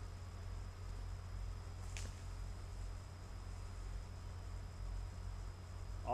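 Quiet background: a steady low rumble with one faint click about two seconds in.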